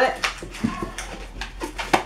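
Long latex twisting balloon being handled and tied in a double knot: a few short taps and rubbery squeaks.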